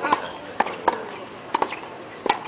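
Tennis practice rally: a tennis ball struck by racket strings and bouncing on a hard court, about five sharp pops in two seconds.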